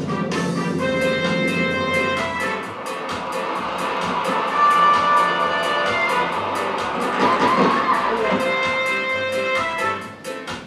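Film soundtrack played over the room's speakers: band music with sustained notes and a fast regular beat, and a large crowd cheering over it as the new flag is raised.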